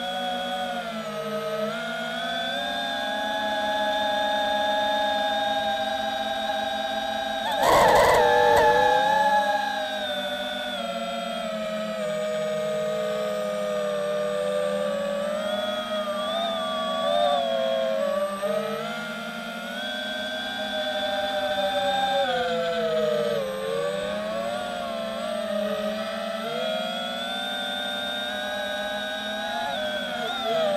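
FPV quadcopter's brushless motors and propellers whining, several pitches gliding up and down together as the throttle changes in manual acro flight, with a brief loud surge about eight seconds in.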